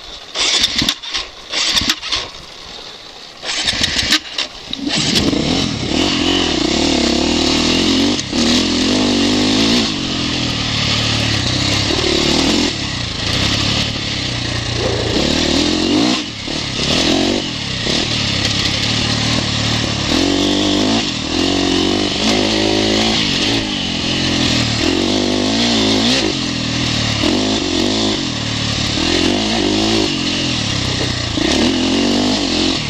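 2011 KTM 450SX four-stroke single-cylinder motocross engine being ridden hard, its revs rising and falling repeatedly with throttle and gear changes. For the first five seconds or so the sound comes in short, broken bursts before it settles into continuous riding.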